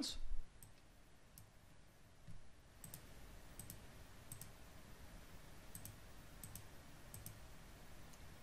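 Faint computer mouse button clicks, about eight of them, each a sharp double tick, coming roughly every second and more regularly in the second half.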